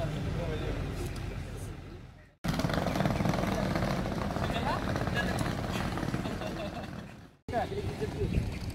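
Background chatter of several people talking at once over a low steady rumble. The sound fades out and cuts straight back in twice, about two and a half seconds in and again about a second before the end.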